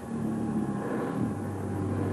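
Upright vacuum cleaner running, its motor a steady drone that comes in suddenly.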